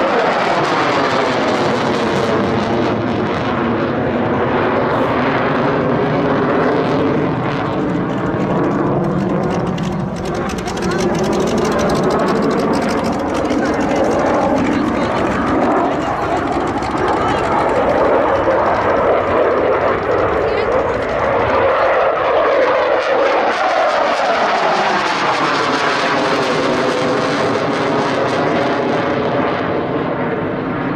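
Radio-controlled Rafale model jet flying overhead. Its engine runs steadily and loudly, and the pitch sweeps slowly up and down as the jet passes and turns.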